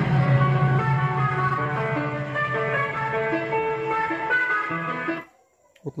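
Guitar music played through a small speaker driven by a repaired AB2000 car amplifier module, as a test of its output. The music cuts off suddenly about five seconds in as the channel is switched.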